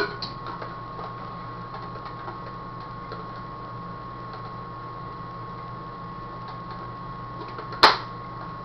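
Steady low electrical hum with a faint high tone, a few light handling clicks, and one sharp click near the end as a paintball hopper is handled.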